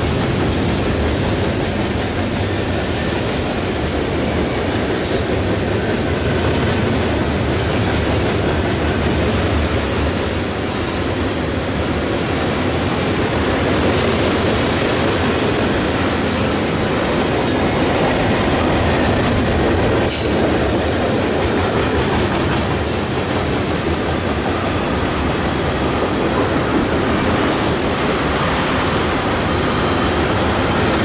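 A freight train of tank cars, covered hoppers and gondolas rolling past: a steady rumble of steel wheels on rail, with a brief spell of sharper clatter about two-thirds of the way through.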